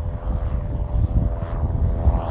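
Light single-engine propeller plane climbing out after takeoff, its engine and propeller giving a steady droning hum, with wind rumbling on the microphone.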